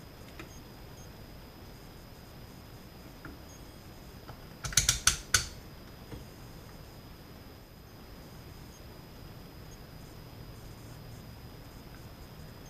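A quick run of four or five sharp clicks and taps about five seconds in, as multimeter test probes are set against a capacitor's leads in a tube radio chassis. Around it there is only faint room hiss with a thin, steady high whine.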